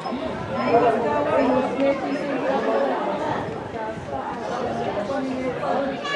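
Several people talking at once close to the microphone: overlapping, unintelligible chatter of sideline spectators.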